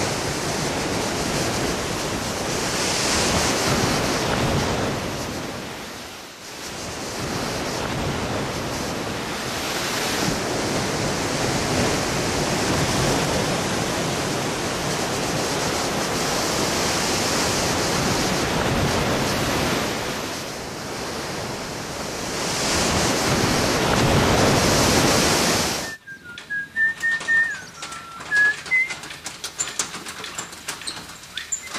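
Surf breaking and washing over a sandy beach, a steady rushing that swells and eases, with a brief lull about six seconds in. Near the end it cuts off suddenly to a quieter background with short, chirping bird calls.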